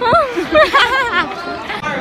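Young women's voices chattering, with pitch swooping up and down, and laughter near the end.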